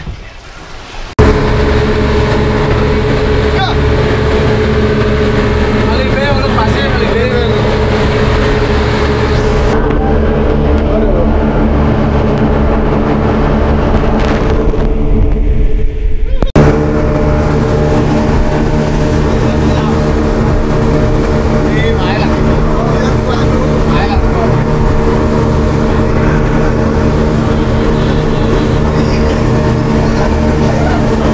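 Fast boat running at speed: a loud, steady engine drone mixed with rushing water and wind noise. It starts abruptly about a second in.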